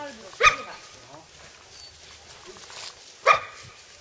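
Dog barking twice, two single short barks about three seconds apart.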